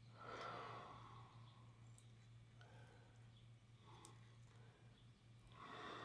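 Near silence with two faint breaths, one just after the start and one near the end, and a few faint clicks in between.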